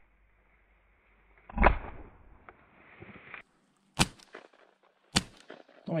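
Shots from a .410 shotgun: a duller, loud shot about a second and a half in, then two sharp shots about a second apart near the end, a double on turtle doves.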